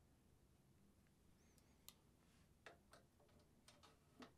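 Near silence with a few faint, scattered clicks and taps in the second half, from a vintage Berg Larsen 110/1 baritone saxophone mouthpiece and its fittings being handled.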